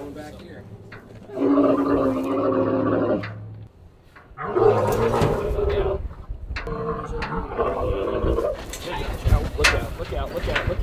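Dromedary camel vocalizing in protest while being handled: three long calls of one to two seconds each, the sign of an agitated, angry animal.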